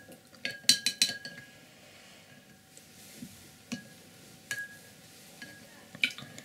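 Paintbrush being washed in a water jar: a quick cluster of clinks as the brush knocks against the jar about a second in, then a few light taps and some stirring.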